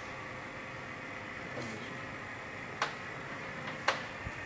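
Air assist pump of an xTool D1 Pro laser engraver running with a steady hum. Two sharp clicks come near the end.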